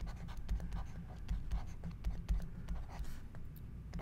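Stylus writing on a drawing tablet: quick scratchy strokes and light ticks as letters are written.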